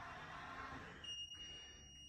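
Faint hum of the JT 2020 commode lift's electric motor as the seat lowers, stopping about a second in. A thin, steady high-pitched beep follows to the end.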